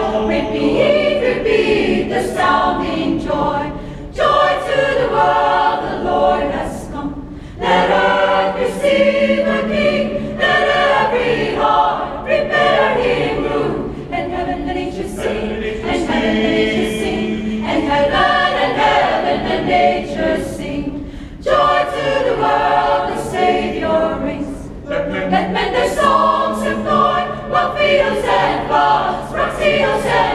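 Choir singing a hymn in several sung phrases, with short breaks between them.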